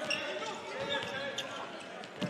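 Basketball arena ambience during live play: a low murmur of a thin crowd with indistinct voices, and a few brief high squeaks.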